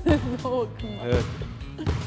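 Background music with speech over it, and a basketball bounced on a hardwood gym floor.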